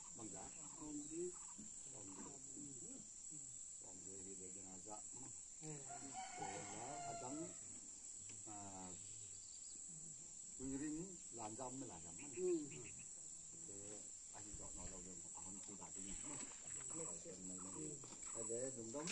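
A rooster crowing once, faint and at a distance, about six seconds in, amid quiet talk.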